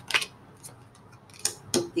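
Tarot cards being handled: a few short, sharp card flicks and taps as a card is drawn from the deck and laid down on the table, one just after the start and two close together near the end.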